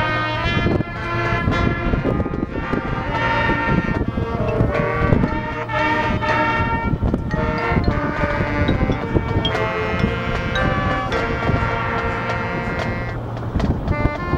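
Marching band playing: brass holding and moving through chords over steady drum strokes.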